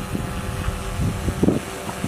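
DJI Phantom 4 Pro quadcopter hovering overhead at the start of its automatic landing after return-to-home, its propellers giving a steady hum of several pitches. Wind rumbles on the microphone.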